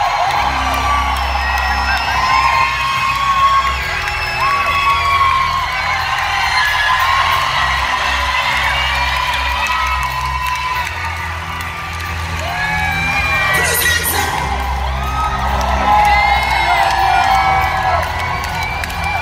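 Live rock band playing, with heavy bass, under a dense crowd close to the microphone singing along, whooping and cheering.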